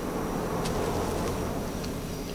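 A steady low buzzing hum with hiss underneath, the background noise of the soundtrack, with a couple of faint ticks.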